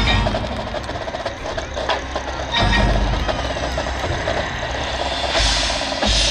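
A marching band playing, its winds holding low sustained notes over percussion strikes, swelling louder near the end with a bright, cymbal-like wash.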